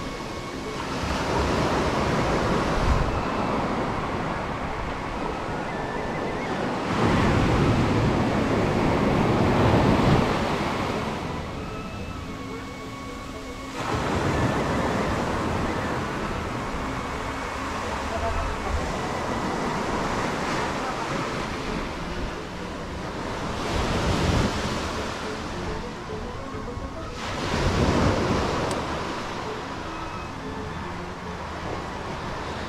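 Surf breaking on a sandy beach, a steady wash of noise that swells and fades every few seconds as each wave comes in.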